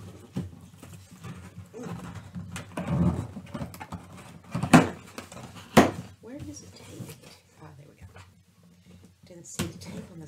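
Cardboard box being worked open with a pointed tool along its seam: scraping and rustling of the cardboard, then two sharp snaps about a second apart as the lid is pulled free.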